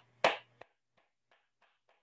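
Hands clapping over a video call as a group clapping exercise: one sharp clap about a quarter second in, then a run of faint, even claps about three a second.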